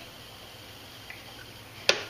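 Quiet room, then a sharp click near the end: one turn of the Pie Face game's crank handle, the first of the counted turns.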